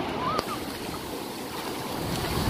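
Seawater washing over and running off a concrete breakwater walkway: a steady rush of surf and splashing water, with one short sharp click about half a second in.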